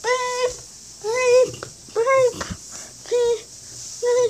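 Four short pitched calls from an animal, likely a pet, about one a second, each fairly steady in pitch.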